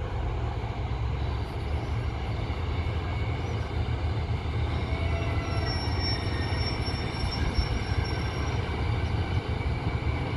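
British Rail Class 153 diesel railcars' underfloor diesel engines running with a steady low rumble. About halfway through, a high-pitched wheel squeal comes in for a few seconds as the approaching unit creeps into the platform.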